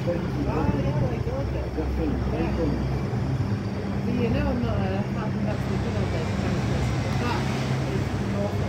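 People talking over the steady low hum of a train standing at the platform.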